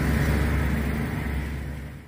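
Motor vehicle engine running nearby, a steady low hum with general noise above it, growing gradually quieter toward the end.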